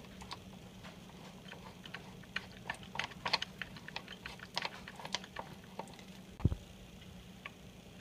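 Small clicks and ticks of fingers handling plastic and metal parts of a kitchen faucet cartridge while working a small gasket loose, with one louder low thump near the end.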